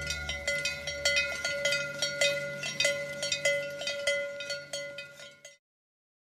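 Cowbells ringing irregularly, many overlapping clangs on a few steady metallic pitches. The ringing fades out and stops about five and a half seconds in.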